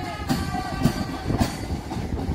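Parade march music: a melody of sustained pitched notes over a steady drum beat a little under two beats a second, keeping time for a march-past.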